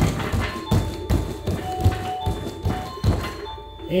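Repeated dull thuds, roughly one every half second to second, as the small children's bare feet land on a padded foam plyo box between jumps to the bar, over background music.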